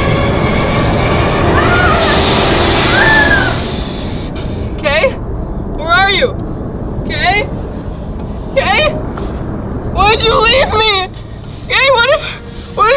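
A loud rushing storm-like noise with a low rumble fills the first few seconds. After that come short, high-pitched, wavering voice cries from children, about one every second or so, with the low rumble still underneath.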